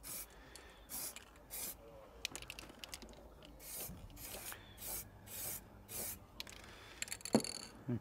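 Aerosol spray can hissing in a series of short bursts as rust-protection paint is sprayed onto the cut end of steel trunking. A brief knock near the end.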